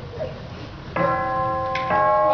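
Bell-like chime tones strike about a second in and ring on together as a sustained chord, with a second strike near the end: a music cue closing the scene.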